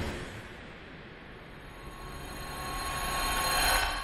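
Logo-reveal sound design: the tail of a loud hit dies away at the start, then a shimmering swell builds to a peak just before the end and begins to fade, as the logo bursts out in light.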